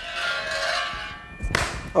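A ball rolling down and around a loop-the-loop demonstration track, a steady rolling sound with several ringing tones. About a second and a half in there is a sharp knock.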